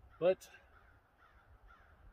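A man's voice saying a single drawn-out "but" about a quarter second in, then a pause with only faint outdoor background.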